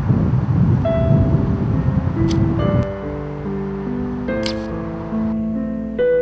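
Outdoor wind noise on the microphone, with soft sustained piano notes coming in about a second in. About three seconds in the wind noise drops away and slow piano chords carry on alone.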